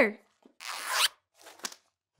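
A zipper pulled closed in one quick stroke, getting louder as it goes, followed by a couple of faint ticks.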